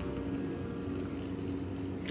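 Hot water pouring from an electric kettle into a paper cup of instant ramen: a soft, steady splashing.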